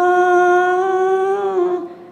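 A woman's solo voice singing a Buddhist liturgy, holding one long, steady note that fades out near the end.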